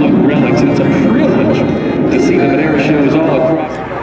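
Several people talking at once over a steady low rumble; the overall level drops a little near the end.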